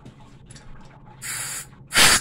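Water heater's temperature-and-pressure relief valve lever lifted, letting a short hiss of trapped air escape about a second in, lasting about half a second. The air is being bled from the tank as it refills with cold water.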